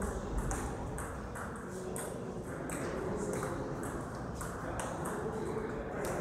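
Table tennis play: the small plastic ball clicking sharply off the rubber bats and the table, irregular strokes about two or three a second, with voices in the background.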